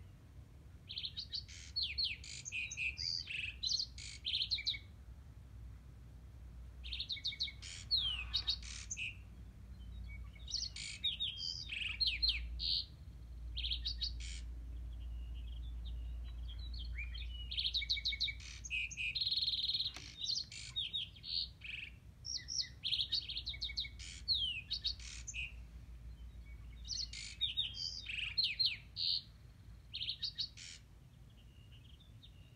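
Springtime songbirds singing: short bursts of quick high chirps and trills recurring every few seconds, over a low steady hum.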